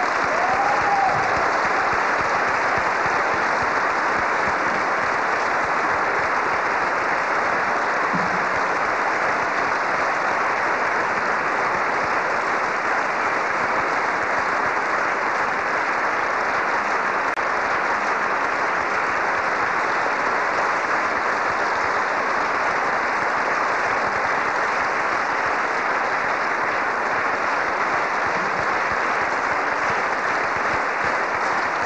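Audience applauding at a steady level.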